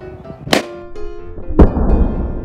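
A green latex balloon bursting as orange-peel juice (limonene) sprayed from the squeezed peel weakens the rubber: a sharp crack about half a second in, then a louder, deeper thud about a second later, over background music.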